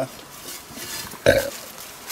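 A man's short burst of laughter about a second in, otherwise only low background noise.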